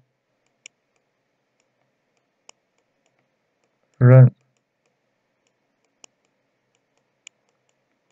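Four faint single clicks spread over several seconds from the pointing device used to write characters on screen, with one short spoken syllable about four seconds in.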